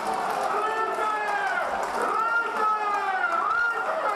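Football crowd in the stands shouting and chanting together, celebrating a goal for the home side.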